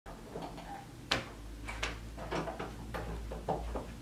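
A door clicks open about a second in, followed by several knocks and footsteps as a person walks into the room, over a low steady hum.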